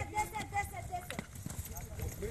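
A woman's voice calling out for about the first second, then footsteps on pavement and the bumping of a handheld camera carried at a hurry, with one sharp knock a little past the middle.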